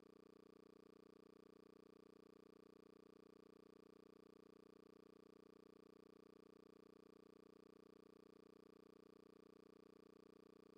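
Near silence: a faint, steady hum.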